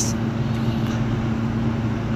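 Steady low background hum with an even hiss beneath it, no change in level.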